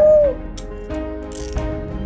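A woman's tearful cry breaks off just after the start. Then come a few sharp metallic mechanical clicks and a brief rasp, over sustained dramatic music.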